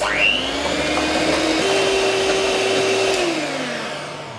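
Electric hand mixer with twin beaters whirring through a bowl of thick cream as shortening and custard base are beaten together. It starts with a quick rising whine, runs steadily, steps up in pitch about halfway, then winds down with a falling pitch near the end.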